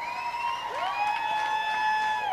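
Nightclub crowd cheering and applauding in reply to the singer, building up, with a long held pitched note over it from about half a second in. The response is one the singer reckons could be louder.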